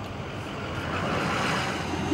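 Vehicle noise: a steady low hum under a rushing sound that grows gradually louder.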